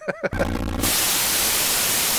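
A brief laugh, then about half a second in a loud, steady burst of white-noise static, an editing transition effect at the close of the episode.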